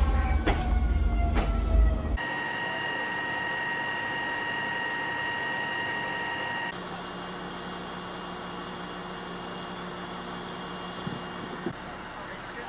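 Fire engine at a working fire: a heavy low rumble with a siren falling in pitch for the first two seconds, then the apparatus's engine and pump running with a steady whine. Near the end a quieter steady hum, with two light clicks.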